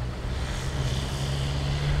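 A vehicle engine idling: a steady low hum under a hiss of outdoor background noise.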